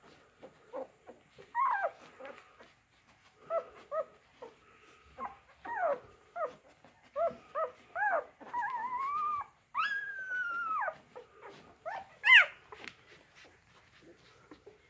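Dog whimpering: a string of short, high squeaks and whines that slide up and down in pitch, with two longer drawn-out whines around the middle and a sharp, loud squeal near the end.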